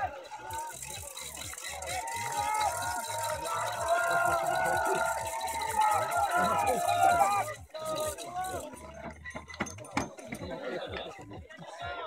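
Distant voices calling out, some shouts drawn out long, for most of the first seven seconds; then quieter, with a few sharp clicks near the end.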